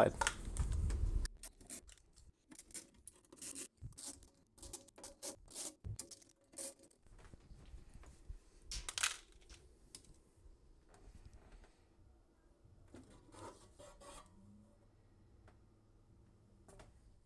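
Faint handling sounds of a Marantz 3800 preamplifier's top cover being unscrewed and lifted off: scattered light clicks, rubs and scrapes, with small screws dropped into a plastic cup. The loudest scrape comes about nine seconds in.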